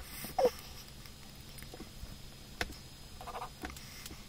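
Drafting instruments handled on a drawing board: one short squeak falling in pitch about half a second in, then a few light clicks and taps.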